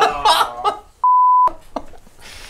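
Laughter, then about a second in a short steady high beep lasting under half a second that blanks out all other sound: a censor bleep dropped over a word.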